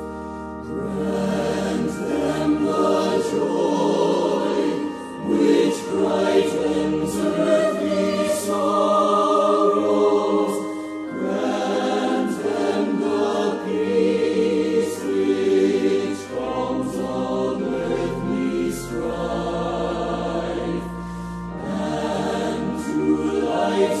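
Recorded Christian choral music: a choir singing a song with sustained low notes underneath.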